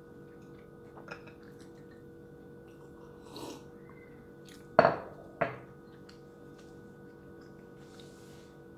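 A glass of water being handled and drunk from. Two sharp knocks about half a second apart, a little past the middle, are the loudest sounds, over a faint steady hum.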